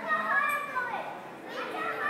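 A young child's high-pitched voice calling out without words, once through the first second and again near the end.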